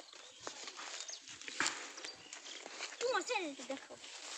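A distant animal call about three seconds in: a short cry falling in pitch, over faint outdoor rustling.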